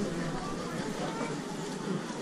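Indistinct voices of people talking, with the general murmur of a pedestrian square.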